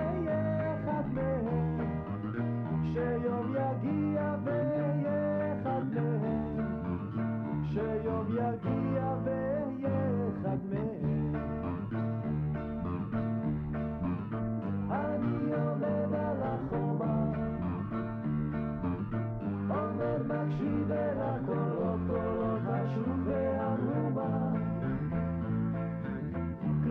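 A man singing a song to strummed acoustic guitar with a steady bass line underneath; the music plays without a break.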